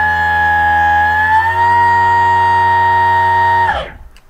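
Interior-permanent-magnet electric motor under load, driven hard by a 24-MOSFET VESC controller, giving a loud steady whine. About a second and a half in, the pitch steps up a little as MTPA (maximum torque per amp) lifts the motor speed from about 25,000 to 28,000 eRPM. The whine cuts off shortly before the end as the throttle is released.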